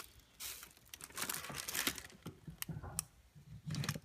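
Rustling handling noise with a few sharp clicks as a plug is fumbled into a wall outlet.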